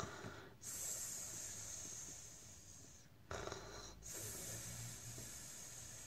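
A person acting out sleep breathing for the book's 'zzzzzz ssssss': a long soft hissing out-breath, a short louder in-breath a little after three seconds in, then another long soft hiss.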